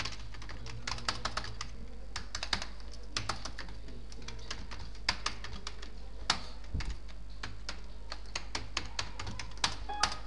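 Typing on a computer keyboard: short runs of key clicks with pauses between them and a few louder single key presses, over a steady low hum.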